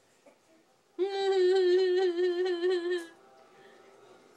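A voice holding one sung note for about two seconds, starting about a second in and wavering slightly in pitch.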